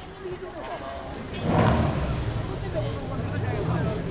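Porsche 911 S's air-cooled two-litre flat-six starting about a second and a half in, catching with a loud burst and then settling to a steady idle, with voices around it.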